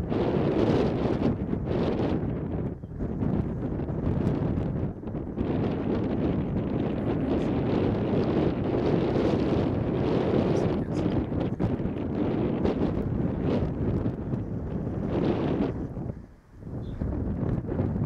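Wind buffeting the camera microphone, a loud gusting rumble with brief lulls, the deepest about three-quarters of the way through.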